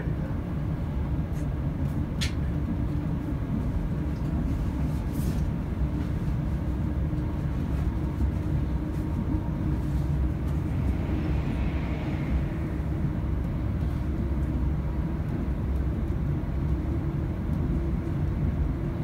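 Cabin noise inside a moving Class 170 Turbostar diesel multiple unit: the steady low rumble of the diesel engine and the wheels running on the track. There are two brief sharp clicks about two and five seconds in.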